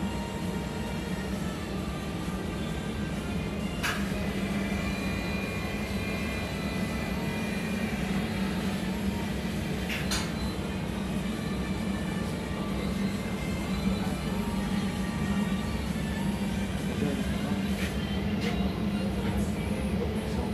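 Steady machine hum of an automated multi-tank immersion cleaning line running, broken by a few sharp clicks.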